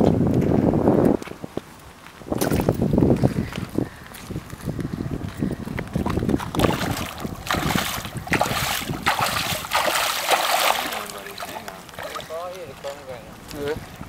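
A hooked sturgeon thrashing and splashing in shallow water at the shoreline, in a stretch of splashing from about six to eleven seconds in. Wind buffets the microphone in the first few seconds.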